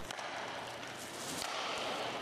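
Background noise of an indoor roller hockey rink: a steady hiss with a light knock about one and a half seconds in.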